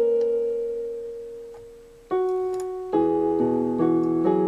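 Background piano music, slow and gentle: a struck note fades away for about two seconds, then new notes and chords come in.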